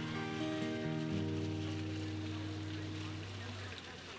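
Acoustic guitar: a few notes picked one after another in the first second, then left ringing and fading out near the end, the closing notes of a song.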